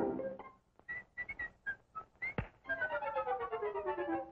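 Early-1930s cartoon soundtrack effects: a few short, high whistle-like chirps, a sharp pop about two and a half seconds in, then a long falling slide of one pitched note.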